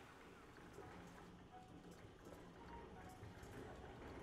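Near silence: a faint low hum of room tone with a few faint ticks.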